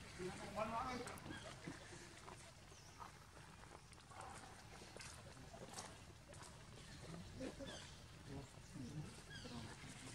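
Young macaques giving short, wavering high squeals as they wrestle, the loudest about half a second in, with fainter calls scattered after.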